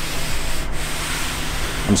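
A hand rubbing across a sanded car body panel patched with body filler, a steady scuffing noise.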